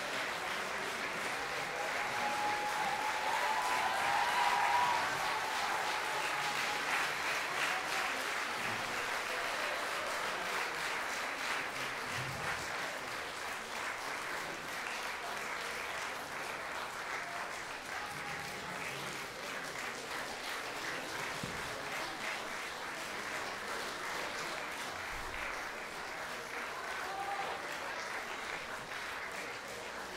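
Sustained applause from a large concert-hall audience, many hands clapping at once. It peaks a few seconds in and then eases off slightly.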